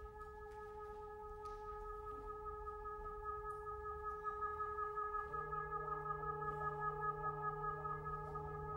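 Brass quartet of horn, trumpet, trombone and tuba holding soft, steady notes in a chord. A lower note joins about five seconds in, and the chord swells slightly with a gentle waver.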